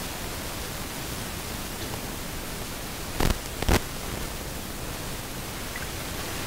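Steady background hiss with two short, sharp knocks a little past the middle, about half a second apart.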